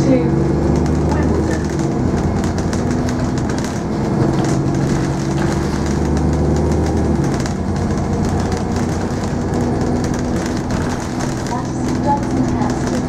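Alexander Dennis Enviro400 double-decker bus heard from inside while under way: the engine's steady drone with hum tones that shift in pitch a few times, over road and cabin noise.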